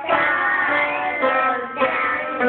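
Several young children singing a song together into handheld microphones, holding each note for about half a second or more.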